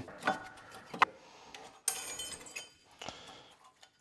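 Light metallic clicks and clinks of thin brake pad retaining clips being worked off a disc brake caliper bracket, with a brighter ringing clink about two seconds in.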